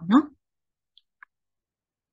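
Two faint, sharp computer-mouse clicks about a quarter second apart, in otherwise quiet room tone.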